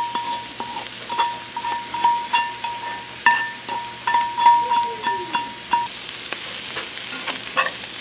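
A metal fork scraping and tapping scrambled eggs out of one cast-iron skillet into another, the strokes leaving short ringing tones, over the sizzle of diced potatoes, ham and vegetables frying in the lower skillet. The tapping stops about six seconds in, leaving the frying.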